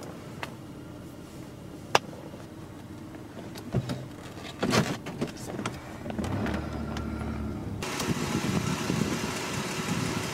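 Car engine running steadily, with a few sharp clicks early on and some knocks and rustling about four to five seconds in. The engine sound grows louder and brighter over the last two seconds.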